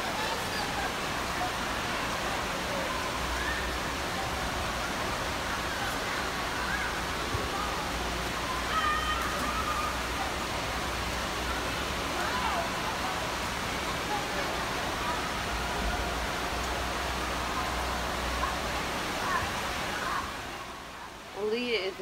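Indoor waterpark ambience: a steady wash of running and splashing water with the scattered, overlapping voices of children and adults in the pool.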